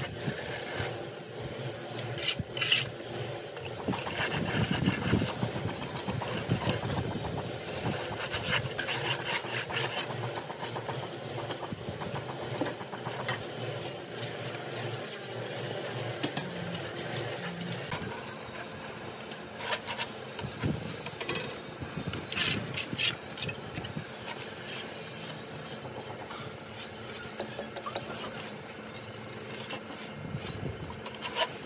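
Metal straightedge scraped across fresh sand-and-cement render on a brick pillar, a steady rasping rub as the plaster is levelled. A few sharp clicks and knocks come a couple of seconds in and again past twenty seconds.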